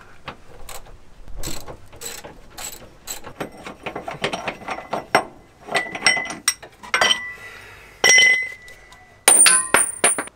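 Socket ratchet clicking in quick runs as the bolt of a van's rear bump stop is undone. Several ringing metal clinks follow, the loudest and sharpest near the end.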